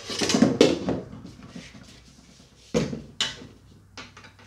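An object dropped and landing with a loud clattering crash that dies away over about a second. Two sharp knocks follow about half a second apart near the end.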